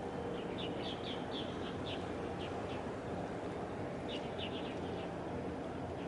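A small bird chirps in two runs of quick, short high notes: the first lasts about two seconds, the second comes about four seconds in. Under them runs a steady low background rumble.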